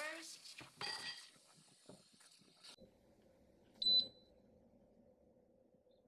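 Tap water running at a kitchen sink as a new electric kettle is rinsed, stopping after about two and a half seconds. About four seconds in, one short electronic beep from the touch panel of a Beautiful One Touch electric kettle, the loudest sound here.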